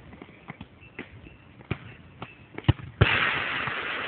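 A football is kicked and bounces on a hard court with a few sharp knocks. About three seconds in, a hard hit sets off a loud rattle of the cage's metal fencing that slowly dies away.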